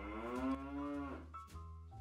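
A cow mooing once: one long moo of about a second that rises slightly in pitch and then falls away.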